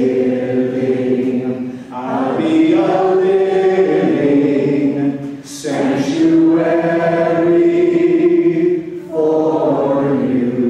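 A congregation singing together: slow phrases of long held notes, with brief breaks between the phrases.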